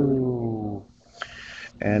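A man's voice: a drawn-out, slightly falling 'uhh' at the start, a short hiss a little past the middle, then speech resuming near the end.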